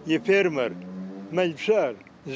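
An elderly man speaking Circassian, with one long drawn-out vowel held at a steady pitch for about half a second between his phrases.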